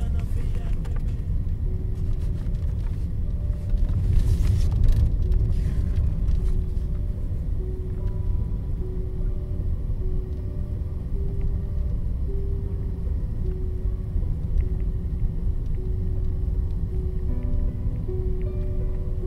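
Steady low rumble of a car interior on the move, with a slow melody of held notes from the film's score above it and a short hiss about four seconds in.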